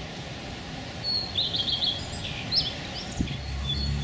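Small birds chirping outdoors: a few short, high calls and a quick run of notes in the middle, over a steady background hiss.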